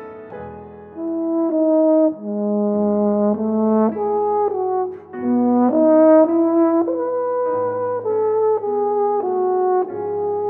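Euphonium playing a melody of held notes over piano accompaniment; the euphonium comes in about a second in after a soft piano passage and pauses briefly about halfway through.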